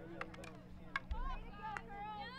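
A few sharp clacks of field hockey sticks hitting the ball and each other as players scramble for it. A high voice calls out in the second half.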